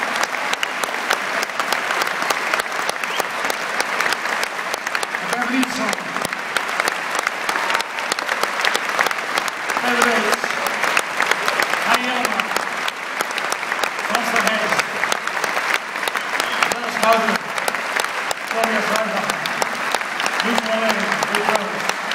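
Concert hall audience applauding steadily, a dense patter of clapping, with short voices from people in the crowd heard over it now and then.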